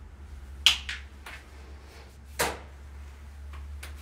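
A few sharp plastic clicks and taps as the exfoliant container is opened and product is dispensed onto gloved hands. The two loudest come about two-thirds of a second in and a little before halfway.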